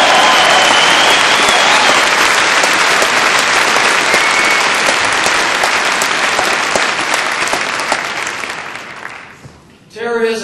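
Audience applauding loudly, a long round of clapping that dies away near the end.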